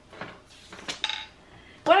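A few light knocks and clinks of hard objects being handled on a desk, one with a short ringing tone about a second in.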